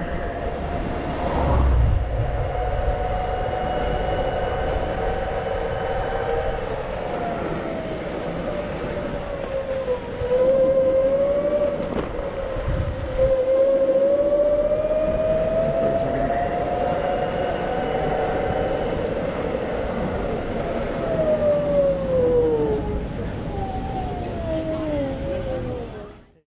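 Electric scooter motor whining as it rides, its pitch rising and falling with speed and dropping away near the end as the scooter slows, over a steady rumble of wind and road noise.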